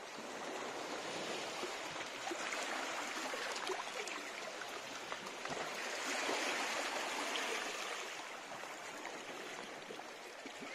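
Calm sea water lapping and washing against a rocky shoreline, a steady wash that swells a little louder about six seconds in.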